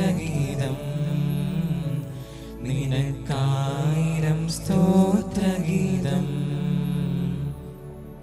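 Slow devotional chant sung over a sustained low accompaniment, the phrases rising and falling, dying down near the end.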